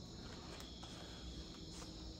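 Faint, steady high chirring of crickets in the night background.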